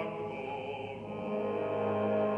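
Live opera music: the orchestra holding long, sustained chords, dipping slightly in loudness midway.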